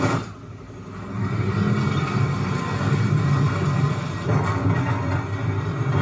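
Action-film soundtrack: music over a heavy vehicle's low engine rumble. It drops away briefly just after the start, then builds back and holds steady.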